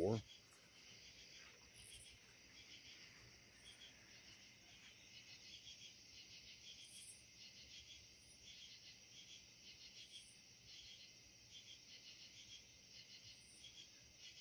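Crickets and other night insects chirping in a faint, steady, high-pitched chorus, with a separate higher chirp repeating every second or two.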